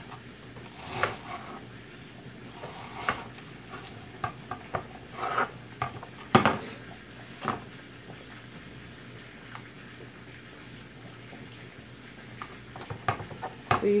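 Light, scattered clicks and knocks of a knife and fingers against a plate and cutting board as sliced onion half-moons are separated by hand, the loudest knock about six seconds in. A low steady hum runs underneath.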